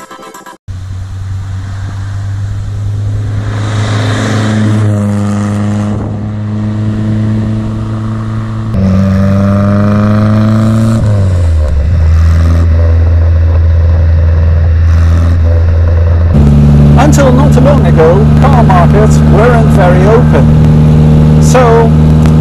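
Innocenti Coupé's small four-cylinder engine pulling through the gears. The revs climb twice and drop sharply at the shifts, then the engine runs steadily at a higher pitch near the end.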